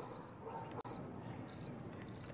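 A cricket chirping: short trilled chirps, high-pitched, repeating about once every three-quarters of a second.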